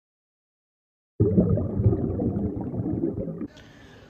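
After about a second of silence, loud close-up chewing and munching of a mouthful of chicken-finger sandwich with fries, lasting about two seconds and cut off abruptly, followed by faint room tone.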